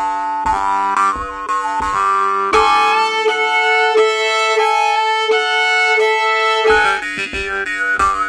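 Norwegian jaw harp (munnharpe) playing a lively halling over a steady drone, with a foot tapping the beat. About two and a half seconds in it gives way to a fiddle bowing the melody of a Shetland bridal march. The jaw harp and foot taps come back near the end.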